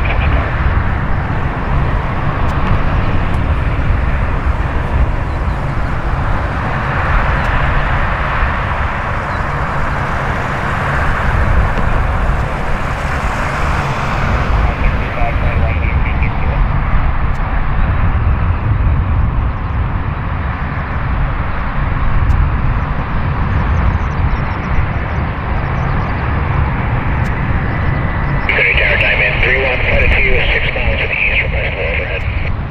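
ShinMaywa US-2 amphibian's four Rolls-Royce AE 2100J turboprops running on the ground, a loud, steady engine and propeller noise. A voice comes in over it near the end.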